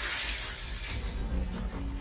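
Soundtrack shattering effect, like breaking glass, its crackle trailing off over a deep rumble. Faint background music comes in near the end.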